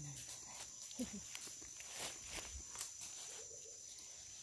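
Irregular footsteps crunching on dry leaf litter and forest floor as people hike a steep trail, under a steady high-pitched insect buzz.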